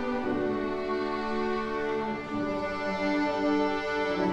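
Youth string orchestra of violins, cellos and double bass playing a slow piece live, bowing long held notes that change every second or so.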